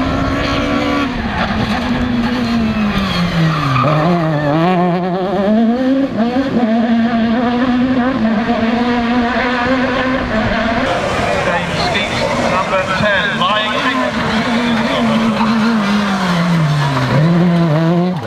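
Peugeot 306 Maxi rally car's engine revving hard at high revs. The pitch falls sharply about four seconds in and again near the end, then climbs as the car pulls through the gears.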